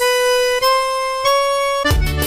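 Forró music break: the drums and bass drop out and a lone reedy lead instrument holds three long notes, each a little higher than the last, before the full band comes back in near the end.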